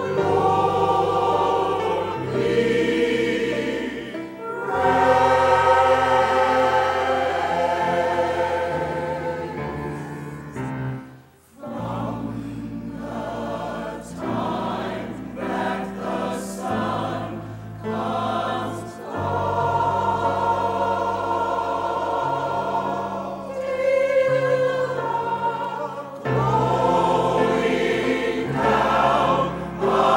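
Church choir singing in harmony, holding long chords, with a brief break about eleven seconds in.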